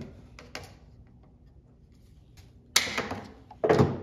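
PVC pipe being cut with a yellow ratcheting scissor-type pipe cutter: a few faint clicks from the cutter, then two loud cracks about a second apart near the end as the blade snaps through the pipe.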